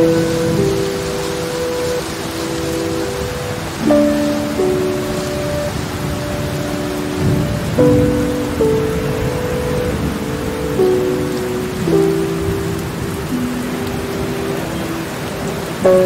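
Steady heavy rain with low rumbles of thunder, mixed with soft music. The music is held chords whose notes change about every four seconds.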